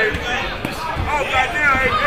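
Dull thuds from two boxers fighting in the ring, several in quick succession, heard under overlapping shouting voices from ringside.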